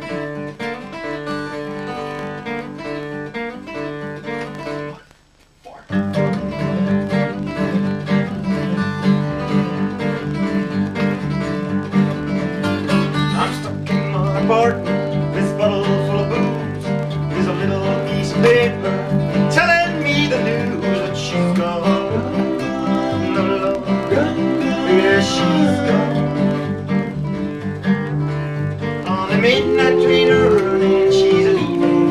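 Acoustic guitar playing, a stop of about a second near five seconds in, then two acoustic guitars and a double bass playing an instrumental passage together, louder and fuller.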